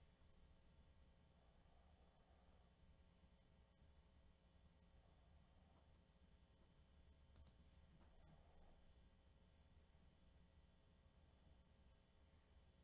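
Near silence: room tone with a low hum and a few faint clicks.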